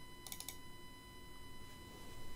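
A computer mouse clicking faintly, a quick run of about four clicks a quarter of a second in.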